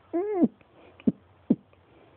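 A cat gives one short meow-like call, its pitch rising and then falling, near the start. Two short sharp knocks follow, about a second in and again half a second later.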